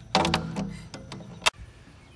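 Ratchet wrench clicking in short strokes as a bolt on a wheel hub is turned. The sound cuts off suddenly about one and a half seconds in, leaving only a quiet hiss.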